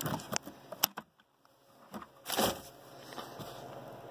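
Handling noises in a Dodge Grand Caravan's interior as a Stow 'n Go floor bin is opened: a few sharp clicks and knocks, then a brief scraping rustle about two and a half seconds in.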